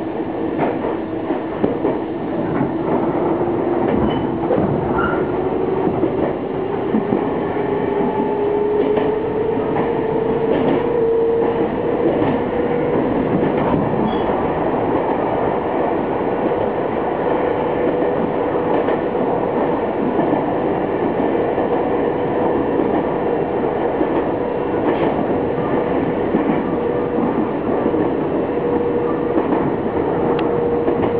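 Nankai electric train heard from inside the leading car, running along the line. A whine rises in pitch over the first ten seconds or so as the train picks up speed, then holds steady. A few clicks come from the wheels on the rails.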